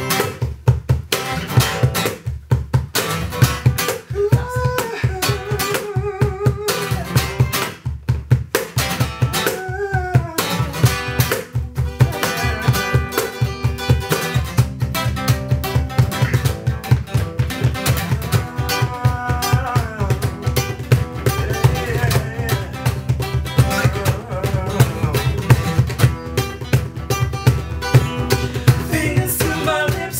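Acoustic guitar strummed in a steady rhythm over a cajon beat, with a voice singing over it.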